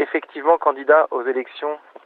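Speech only: a voice talking on a radio broadcast recording, thin-sounding with the highs cut off.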